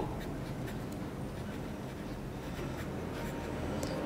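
Hero 501-1 fountain pen's fude nib scratching softly across paper in short strokes as Chinese characters are written.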